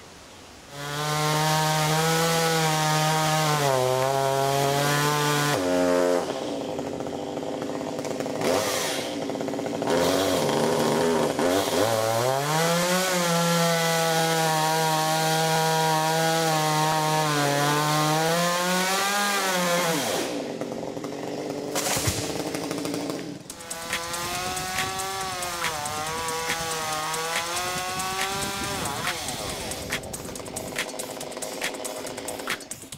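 Chainsaw cutting into a dead tree trunk, running at high revs with its pitch sagging as the chain bites into the wood and rising again as it frees up. The saw eases back around six and twenty seconds in between cuts, then runs again more quietly near the end.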